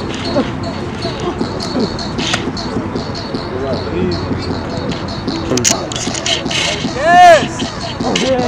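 People's voices with a busy background, and a loud, high, rising-then-falling cry or shout about seven seconds in.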